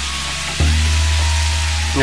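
Food sizzling as it fries in a frying pan while being stirred with a wooden spoon: a steady hiss, with background music underneath.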